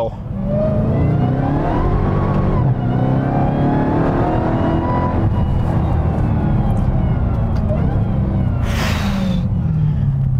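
A 2021 Dodge Charger Hellcat's supercharged 6.2-litre V8 under full throttle, heard from inside the cabin. It climbs in pitch, dips briefly about three seconds in, climbs again and keeps pulling hard, with a short hiss near the end.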